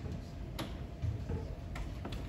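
Handheld microphone being handled: two sharp clicks, one about half a second in and one near the end, over low bumping handling noise.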